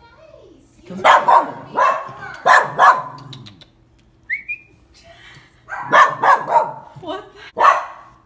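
A dog barking in short bursts: four barks in the first three seconds, a pause, then another run of barks from about six seconds in.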